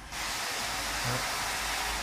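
A steady, high hiss of noise that starts abruptly and cuts off suddenly about two seconds later.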